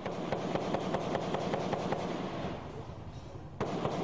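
Rapid gunfire, sharp reports at about five a second for roughly two seconds, dying away, then a sudden loud bang near the end.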